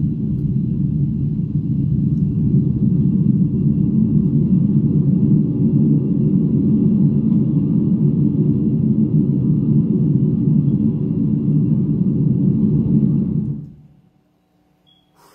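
Loud, steady low rumble right on a phone's microphone, with something held or blowing against it at very close range. It cuts off sharply near the end.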